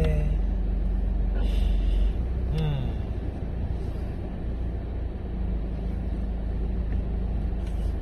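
Steady low road and engine rumble inside a car's cabin as it is driven.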